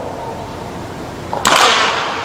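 Starting gun fired once about one and a half seconds in, a single sharp crack with a short echo, signalling the start of a sprint race.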